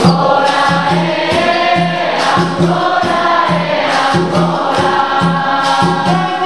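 Capoeira roda music: a group singing together in chorus over berimbaus, the musical bows struck in a steady repeating rhythm.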